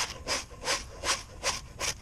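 Fish scaler scraping the scales off a fluke (summer flounder), stroking from tail toward head. About six quick rasping strokes, evenly spaced, roughly three a second.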